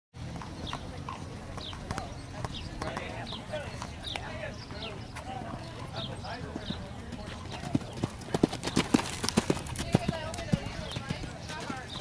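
A horse's hoofbeats on the sand arena at a canter, a run of sharp strikes that grows loudest for a few seconds near the end as the horse passes close. Faint voices talk in the background.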